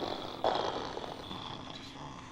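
A person's breathy exhale, a short hiss about half a second in that fades away over roughly a second.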